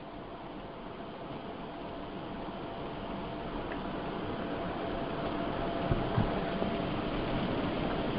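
Steady hiss-like background noise of an open microphone on an online call, growing slowly louder, with a faint steady tone beneath it and a couple of faint knocks about six seconds in.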